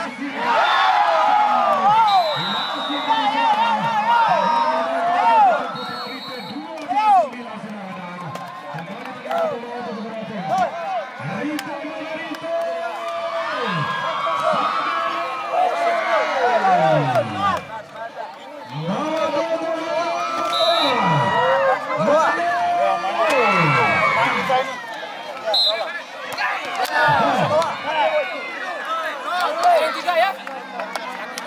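Crowd of volleyball spectators cheering and shouting, many voices overlapping in rising and falling calls and whoops that swell in several waves.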